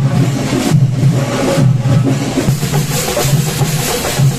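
Sinkari melam drumming: a festival drum ensemble of chenda drums playing loudly with a strong, regular beat.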